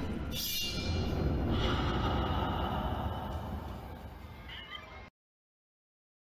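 Phone-recorded sound from an ice show in an arena: a steady crowd hubbub with faint music. It fades and then cuts to dead silence about five seconds in.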